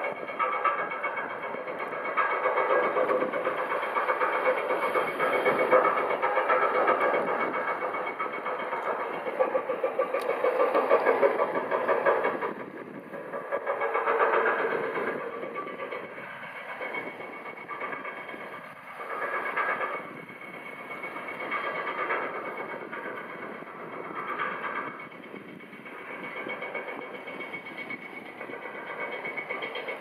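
A high-speed catamaran ferry's engines running as it passes across the water: a steady mechanical drone with a whine of several held tones. It is loudest over the first twelve seconds, then weaker, swelling and fading.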